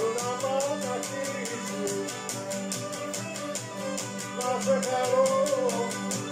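Cretan lyra bowing a winding melody over a laouto strummed in a quick, even rhythm.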